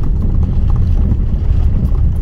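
Car driving over a rough road surface whose old asphalt has been scraped off, a loud, steady low rumble of tyres and engine.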